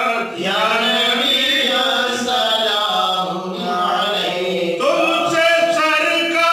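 Men's voices chanting an unaccompanied Islamic devotional salutation, with long drawn-out notes.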